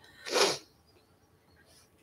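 A single short, breathy burst of breath from a woman, lasting under half a second near the start, then quiet.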